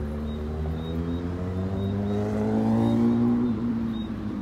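A motor vehicle's engine accelerating past, its pitch rising steadily for about three seconds and then easing off near the end.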